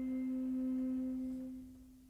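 A single piano note ringing on as an almost pure tone and dying away to near silence by the end.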